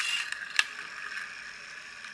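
The flywheel and gears of a Tonka friction-motor toy car whirring as its wheels are turned by hand to spin the flywheel up. The whir eases off over the first second, with a sharp click about half a second in.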